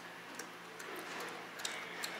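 Mouth sounds of people chewing raw leafy greens: a few soft, irregular clicks and smacks over quiet room noise.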